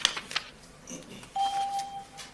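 A single steady electronic beep from the chamber's voting system, starting a little past the middle and lasting about two-thirds of a second, sounding during the vote. A few light clicks and knocks come in the first half second.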